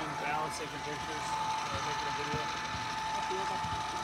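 Faint background talking from several people, over a steady high-pitched hum that holds one pitch throughout.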